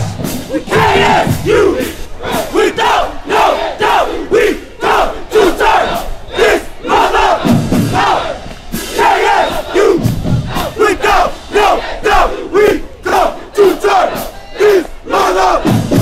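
Marching band members chanting and shouting together in a quick rhythmic cadence while they march, their instruments silent.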